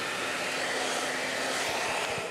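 Hand-held hair dryer running: a steady rush of blown air with a faint low hum from its motor, fading out at the end.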